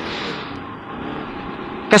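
Motorcycle moving at low speed, a steady hiss of engine, road and wind noise heard from on the bike.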